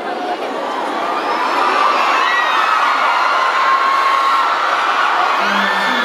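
A crowd of fans screaming and cheering in many high voices, growing louder over the first two seconds and then holding steady.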